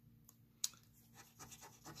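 Coin scraping the scratch-off coating of a lottery scratch ticket: faint scraping strokes, more of them in the second half, with one sharp tick about half a second in.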